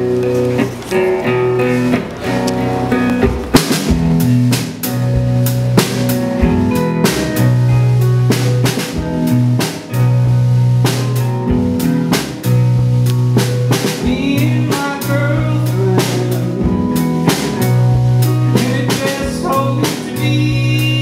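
Live band playing an instrumental passage: electric guitars over low bass notes and a drum kit, the drums coming in harder a few seconds in.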